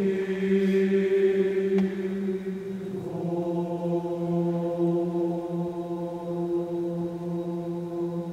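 Men's choir singing long held chords, changing to a new chord about three seconds in and sustaining it.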